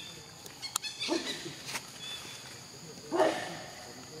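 Macaque calls: two short cries, one about a second in and a louder one just after three seconds, over a steady high drone of forest insects. A few sharp clicks come just before the first call.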